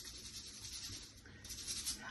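Dish brush scrubbing dishes in a kitchen sink, a faint hissing rub that stops about one and a half seconds in.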